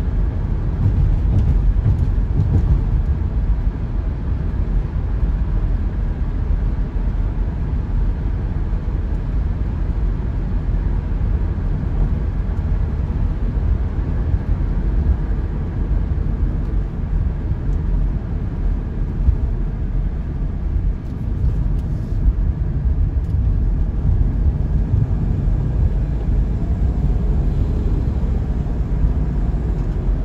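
Steady low rumble of a car driving along, road and engine noise heard from inside the cabin.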